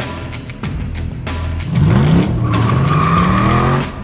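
Film score with a steady beat; about halfway in, a car engine revs up loudly with rising pitch, joined by a high tire squeal, and everything cuts off just before the end.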